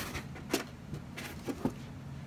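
A few light, sharp taps and clicks of plastic action figures being handled and moved on a toy wrestling ring, over a faint steady low hum.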